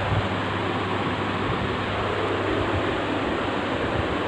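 Steady room noise: an even, fan-like hiss with a low hum underneath, unchanging throughout.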